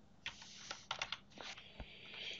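Computer keyboard typing: a series of quiet, irregular keystrokes.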